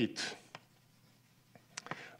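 Chalk writing on a blackboard: faint scratching with a few sharp taps, several of them close together near the end.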